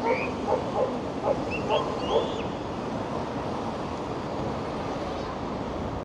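Steady outdoor street and seafront background noise, with a few short calls in the first two seconds or so.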